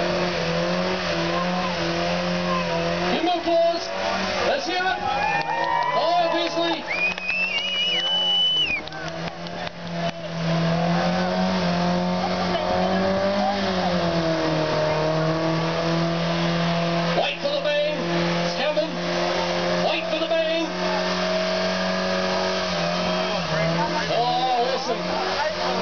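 Ford Escort's engine held at high, steady revs during a burnout, with the tyres spinning. The revs drop briefly about eight to ten seconds in, then climb back and hold.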